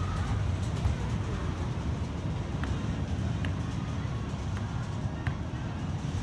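Steady low rumble of a Vekoma Suspended Looping Coaster train running along its steel track, heard with outdoor amusement-park background noise and a few faint ticks.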